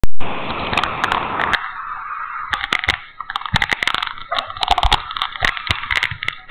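Rustling and knocking from a hidden camera jostled while being carried on foot, starting with a sharp pop as the recording begins.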